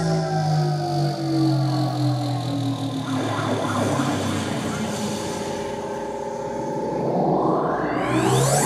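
Live electronic music played from laptops: layered sustained synth tones slide slowly downward, then settle into steady held tones, with a steep rising sweep near the end.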